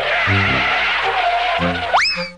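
A tyre-screech skid sound effect, a harsh hiss lasting nearly two seconds that ends in a quick rising whistle, laid over background music.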